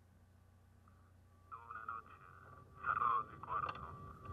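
A faint steady electrical hum, then about a second and a half in a person's voice starts, getting louder near the end.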